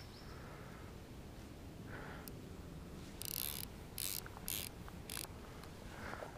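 Lamson Liquid fly reel ratcheting in four short bursts, starting about three seconds in, while a hooked carp is being played on the fly rod.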